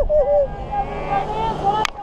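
A woman's high-pitched voice on a Skycoaster swing: a quick run of pulsed notes, about seven a second, then a long drawn-out cry, over wind rushing on the microphone. A sharp click comes near the end.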